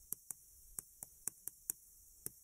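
Chalk tapping against a chalkboard as a heading is written by hand: a series of faint, short clicks, about seven and irregularly spaced.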